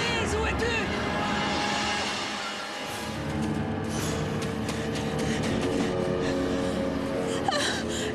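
Dramatic film score of long held chords, building through the middle, with a woman's short gasps and whimpers in the first second.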